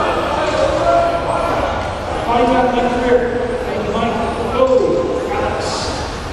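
Indistinct man's voice, in the manner of a race announcer over a public-address system, echoing in a large hall so that the words cannot be made out.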